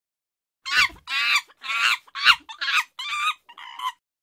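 A chicken clucking and cackling: about seven short, high calls in quick succession, each falling in pitch at its end.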